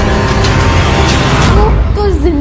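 Loud, dramatic background film score with a dense rushing noise swelling under it, and a voice coming in near the end.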